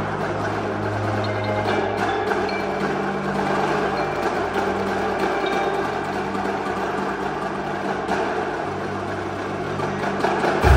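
Indoor percussion front ensemble playing marimbas and vibraphones in a continuous, sustained passage, with steady low held notes underneath.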